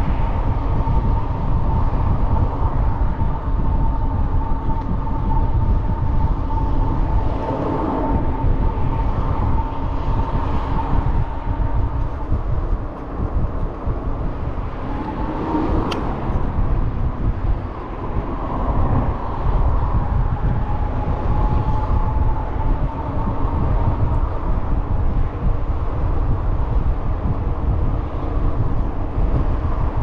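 Wind buffeting the microphone of a camera on a moving bicycle: a loud, steady noise with a faint steady whine above it that fades in and out. A single sharp click comes about sixteen seconds in.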